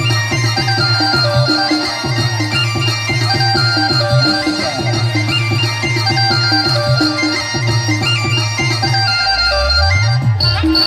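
Loud timli dance music from a band: sustained melody notes stepping in pitch over a steady, driving drum beat. A deep bass swoop rises just before the end.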